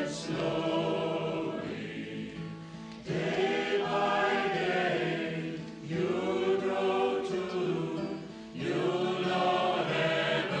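Choir singing a slow hymn-like chant in long phrases of about three seconds, each fading briefly before the next begins.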